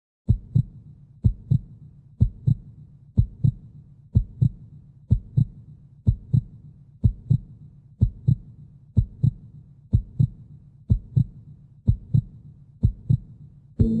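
A heartbeat sound effect: paired low thumps, lub-dub, a little under one beat a second, over a low steady drone. Near the end a fuller music bed swells in.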